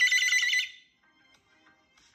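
A high, fast-trilling ringtone-like tone that cuts off sharply under a second in.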